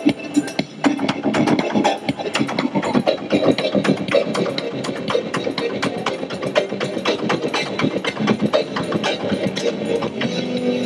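Synth-pop instrumental break played live on an electronic keyboard, with a busy, quick percussive beat under sustained keyboard notes.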